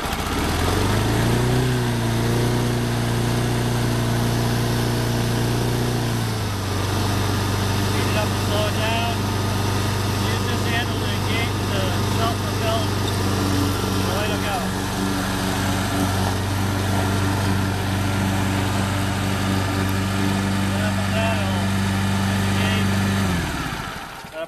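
Snapper self-propelled walk-behind lawn mower's small gasoline engine starting up after a pull on the recoil cord, rising in pitch and running steadily. About six seconds in it drops to a lower steady pitch and keeps running, then cuts off abruptly near the end.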